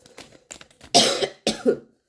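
A person coughing twice in quick succession, about a second in, after a few faint light clicks.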